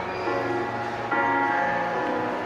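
Electronic keyboard holding sustained chords in a bell-like tone, with a new chord struck about a second in.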